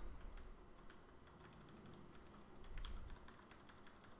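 Faint computer keyboard keystrokes, an irregular scatter of light key clicks as code is typed and edited.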